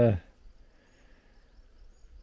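The tail of a man's drawn-out "uh", then quiet outdoor ambience with a couple of faint, brief high chirps.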